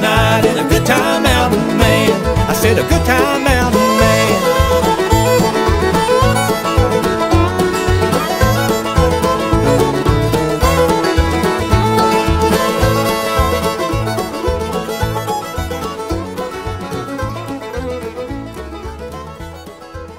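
Bluegrass band playing an instrumental outro, with banjo, fiddle and guitar over a bass on an even beat, after the last sung word. The music fades out over the last several seconds.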